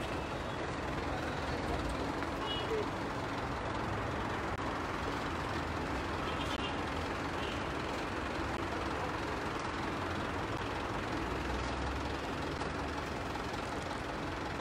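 Steady city street traffic noise, a continuous even rumble, with a few faint brief tones in the middle.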